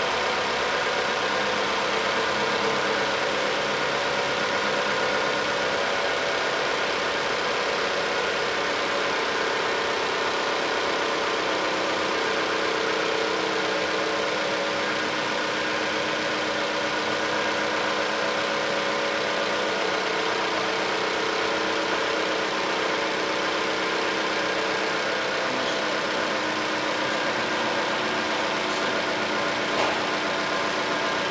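Chrysler 200 engine idling steadily with the air-conditioning system running in a low-heat-load test, its electronically controlled variable compressor cycling in normal mode, and a constant hum and whir with no clicks or changes in speed.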